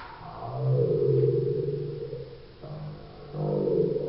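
A low, drawn-out voice-like sound in two long stretches, with a short break about two and a half seconds in.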